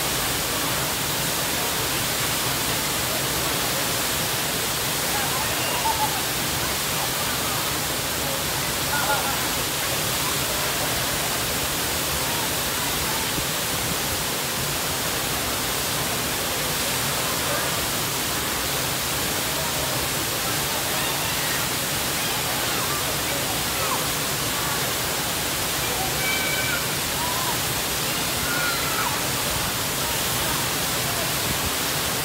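Looking Glass Falls, a waterfall pouring down a rock face into its plunge pool: a loud, steady rush of falling and splashing water with no let-up.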